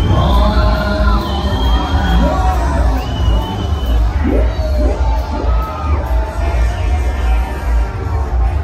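Loud music with a heavy bass beat from a fairground ride's sound system, with crowd noise and occasional shouts over it.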